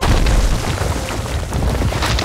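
Cartoon sound effect of ground bursting open: a sudden loud boom that carries on as a dense, crackling rumble as Groot's branches erupt up out of the earth.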